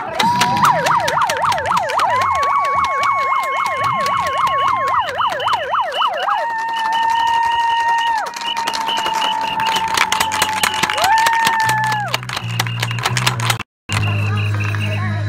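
Emergency-vehicle siren sounding in fast rising-and-falling yelps over a held steady tone for about six seconds, then switching to a steady held tone that drops and returns. A rapid run of sharp clicks or knocks sounds throughout, and the sound cuts out briefly just before the end.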